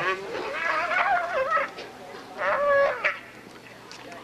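A downed roping calf bawling twice: a long, wavering call and then a shorter one.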